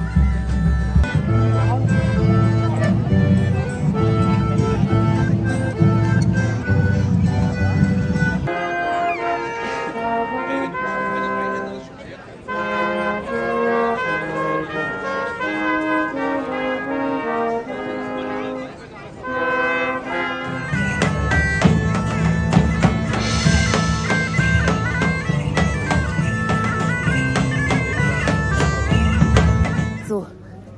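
Music throughout. For the first eight seconds or so, and again from about 21 seconds, a fuller piece with a heavy low end plays. In between, a small brass ensemble of trumpet, trombone and tuba plays a melody in several parts, pausing briefly between phrases.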